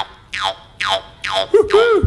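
Jew's harp twanging in quick downward-sliding strokes, about five in the first second and a half, then a steady drone with overtones arching up and down: the cartoon 'boing' of a bouncing character.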